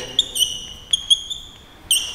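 Chalk writing on a blackboard: several short, high-pitched squeaks as the chalk drags across the board, with a couple of sharp taps of chalk on the board about a second in.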